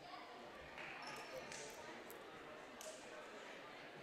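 Faint murmur of spectators' voices in a gymnasium during a stoppage in play, with a few light taps.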